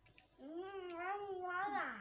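A high-pitched human voice holding one drawn-out, slightly wavering note for about a second and a half, starting about half a second in and dipping at the end.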